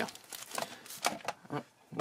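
Foil Yu-Gi-Oh! Star Pack VRAINS booster wrappers crinkling in the hands as they are handled, in several short, irregular rustles.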